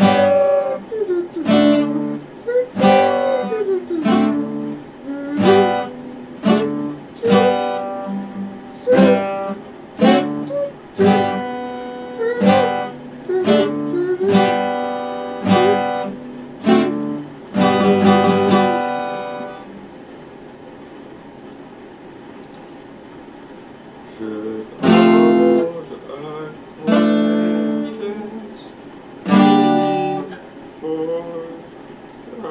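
Epiphone acoustic guitar strummed in chords, about one strum a second. The strumming stops for about five seconds after the middle, then a few separate strums ring out near the end.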